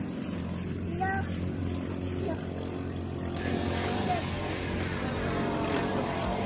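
A racing boat's 18 hp Ducar Dura Guard engine running at speed, a steady drone, with a hiss joining about three seconds in.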